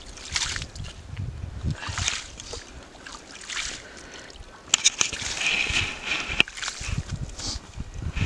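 A metal ice skimmer scooping slush and ice chips out of a freshly drilled ice-fishing hole, in a series of separate wet, sloshing scrapes. From about five seconds in there is a louder stretch of crunching with sharp clicks.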